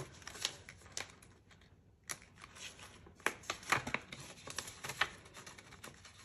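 Polymer banknotes and a clear plastic binder sleeve crinkling and rustling as the notes are handled and slid into the sleeve: a scatter of soft crackles and ticks, with a brief lull about two seconds in.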